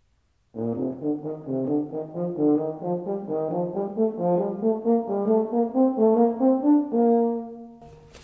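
Euphonium playing a quick scale pattern of short, tongued notes, stepping up and down, ending on a longer held note that fades near the end.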